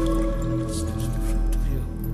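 Live band accompaniment between sung lines: acoustic guitar and drum kit with steady low bass pulses and a few light cymbal strikes.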